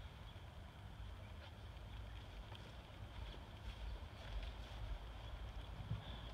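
Wind rumbling on the microphone with faint outdoor background, low in level and without any engine running.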